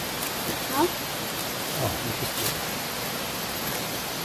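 A steady outdoor hiss, even across the whole range, with two brief faint voice sounds about a second and two seconds in.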